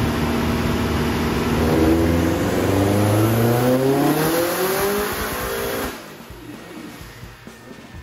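Subaru Impreza GC8's turbocharged 2.1-litre stroker EJ20 flat-four at full throttle on a chassis dyno, revs climbing steadily through a power pull. About six seconds in the sound drops away sharply as the run ends.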